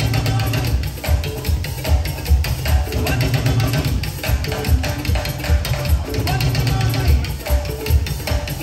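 Live band dance music: drums and percussion keep a steady, driving beat over heavy bass, with held pitched notes above.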